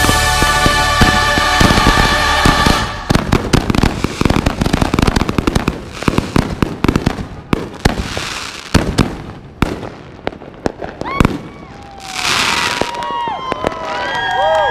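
Music plays for about the first three seconds and then stops. It gives way to a rapid barrage of aerial firework bursts and crackling reports that thin out towards the end of the show. A few whistling glides are heard near the end.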